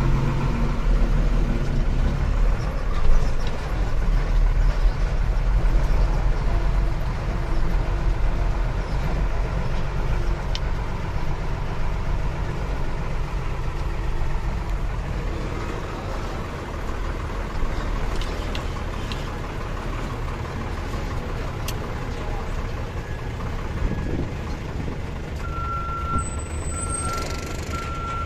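Mitsubishi Fuso truck's diesel engine running at low speed, heard from inside the cab as a steady low drone while the truck rolls along. Near the end, a few short beeps sound over it.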